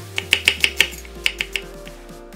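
Kitchen knife slicing an onion into thick strips on a wooden cutting board: a quick run of sharp knocks as the blade hits the board, about six in the first second, then three more shortly after.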